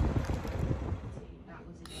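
Wind buffeting a phone microphone as low, choppy rumbling that eases off about a second in. Near the end it gives way abruptly to a steady, high electronic whine.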